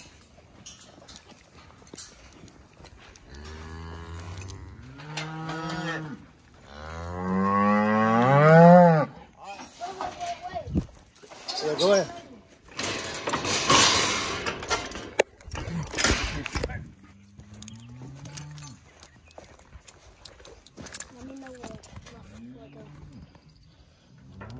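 Cattle bawling: several drawn-out calls that rise and fall in pitch, the loudest about eight seconds in. A stretch of rough, noisy sound comes between the calls in the middle.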